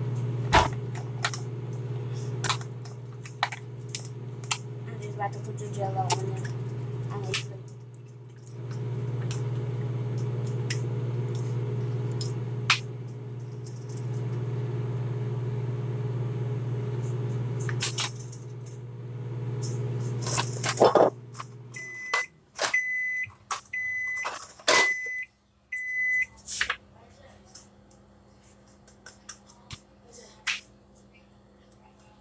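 Microwave oven running with a steady low hum while dishes and utensils clatter and click. Near the end the hum stops and the microwave gives four short, high beeps as its cycle finishes.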